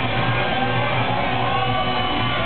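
Rock band playing live and loud: strummed electric guitars over drums.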